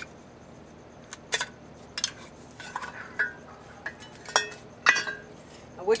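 Sharp metal clicks and clinks of a flathead screwdriver working at a pool pump motor's capacitor and wire terminals, a handful of separate ticks spread over several seconds, the strongest about five seconds in.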